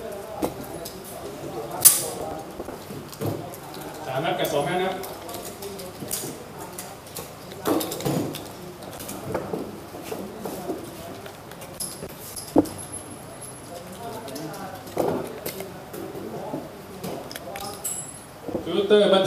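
Voices talking quietly in the background, with two sharp clicks, one about two seconds in and one about twelve and a half seconds in.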